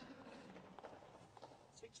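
Faint, indistinct speech at low level, ending as a voice says "twenty four".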